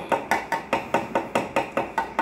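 Rapid, regular knocking, about five sharp strikes a second, each with a short ring.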